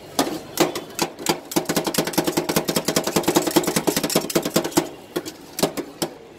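Two metal spatulas chopping and scraping ice cream on a steel cold pan, clacking against the metal. The strikes come in a fast, dense run through the middle and are sparser near the start and end, with a faint metallic ring under them.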